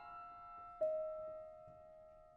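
Concert grand piano playing a quiet, sparse passage of a contemporary piano sonata: held notes ring and fade, and one new note is struck about a second in and left to die away.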